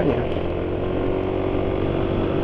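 Yamaha NMAX scooter's single-cylinder engine running steadily under way while the scooter picks up speed. The engine sounds somewhat rough, which the rider puts down to engine oil near the end of its life.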